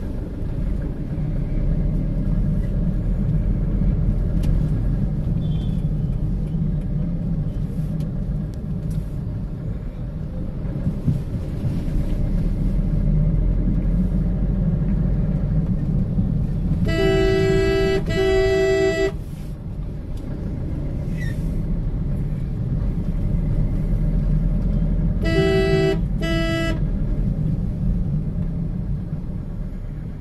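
Low, steady rumble of a vehicle driving over a rough, potholed road. A vehicle horn sounds two blasts of about a second each some seventeen seconds in, then two short toots about eight seconds later.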